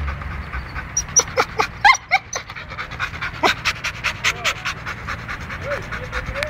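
A dog panting in quick, regular breaths, about five a second.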